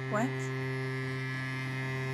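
A low, steady sustained drone held on one pitch with its overtones, the underscore of a horror film, continuing from bowed low strings.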